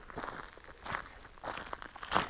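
Faint, irregular crunching of loose gravel on a gravel road surface.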